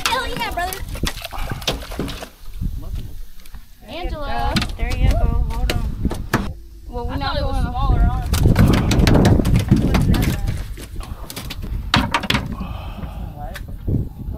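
Voices without clear words, with scattered knocks and clatters on a boat deck as a landed redfish is handled on fish grips and laid down.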